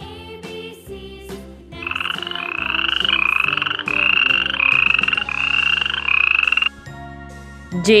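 A rapid, pulsed trilling animal call, repeated about seven times back to back in a run of about five seconds, each call rising slightly in pitch, then stopping abruptly.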